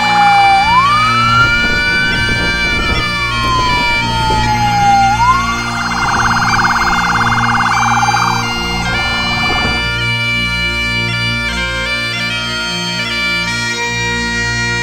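Emergency vehicle siren over sustained background music: a slow wail that rises and falls, then a rapid warbling yelp that cuts off about ten seconds in.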